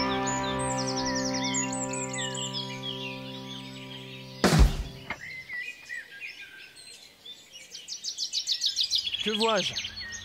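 A sustained music chord fades out, broken about halfway through by a sudden loud noise burst. Outdoor birdsong follows: small birds' repeated high chirps and tweets, busiest near the end.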